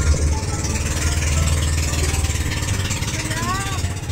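Motorboat engine running at a steady low drone, with a haze of wind and water hiss over it.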